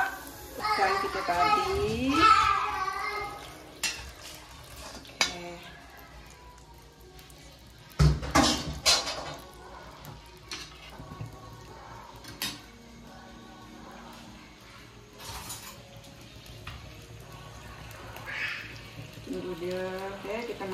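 Cooking in a non-stick wok: scattered clinks of utensils against the pan. About eight seconds in, a loud sudden burst as liquid is poured into the hot oil with the frying aromatics, dying down over a second or so.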